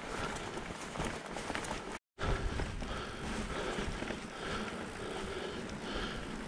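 Riding noise of a mountain bike rolling over a rough grass track: tyre rumble with small rattles and clicks from the bike. It breaks off into a brief moment of silence about two seconds in, then carries on.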